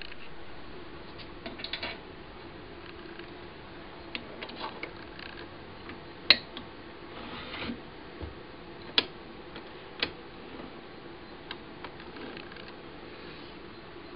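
Scattered metal clicks and knocks from the cast tailstock of a Clarke 37-inch wood lathe being handled and slid up towards the headstock centre, with three sharp clicks in the second half.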